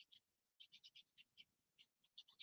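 Near silence with a few faint, short crackles of paper being handled.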